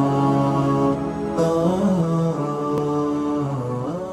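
Outro music: voices chanting long held notes, growing quieter toward the end.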